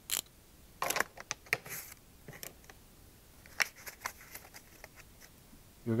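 Light metal clicks and scrapes in a few short runs from a socket ratchet and a nut being unscrewed from a trolling motor's propeller shaft and handled.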